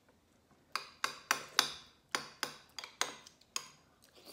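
Metal spoons clinking against ceramic plates and bowls while eating: about ten quick, ringing clinks over three seconds, starting about a second in.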